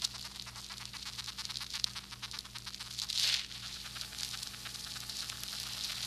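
Leaf-cutter ant stridulating, moving its abdomen backwards and forwards to make a rapid, scratchy train of ticks, picked up through a plate microphone with a bit of hiss. It is the ant's alarm call while buried under soil, calling its nestmates to dig it out.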